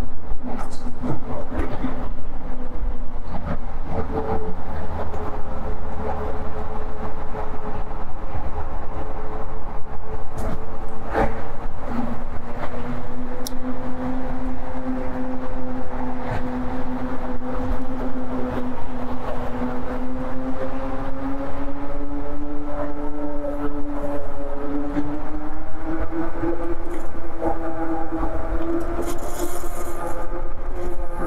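Eahora Juliet e-bike under way: a steady whine from its electric motor, in several pitches at once, creeping slowly upward in pitch over the second half as the bike gathers speed, over a low rumble of wind and tyres on the pavement. A single sharp knock sounds about eleven seconds in.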